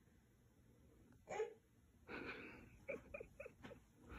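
Faint, short human vocal sounds: one brief high-pitched voiced sound about a second in, a breath, then a run of four quick soft voiced huffs, like quiet giggling or panting.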